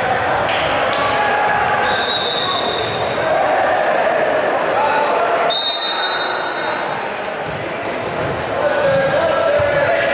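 Indistinct voices and chatter echoing around a gymnasium during a pause in a volleyball game, with a volleyball bouncing on the hardwood floor and a couple of brief high squeaks.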